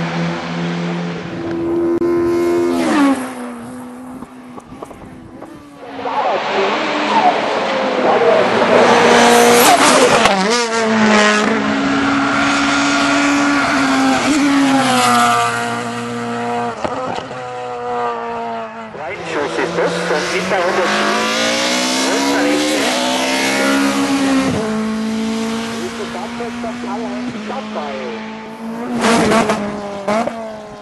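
Race car engines at full throttle on a hill climb, several cars one after another, each climbing in pitch and dropping sharply at each upshift.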